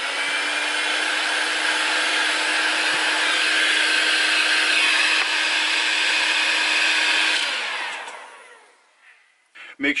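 Heat gun blowing steadily, shrinking heat-shrink tubing over cable joints. About seven and a half seconds in it is switched off, and its fan winds down with a falling hum and fades out.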